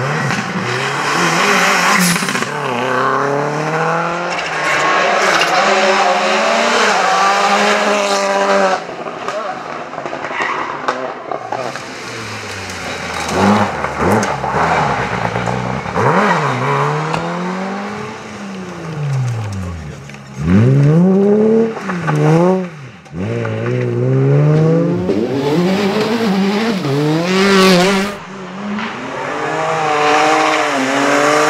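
Rally cars at full throttle, one after another: engines revving hard through the gears, the pitch climbing with each gear and dropping sharply at each shift or lift, over the noise of tyres on loose gravel. The sound breaks off suddenly about nine seconds in, and later there are several quick drops and climbs in revs as a car brakes and accelerates again.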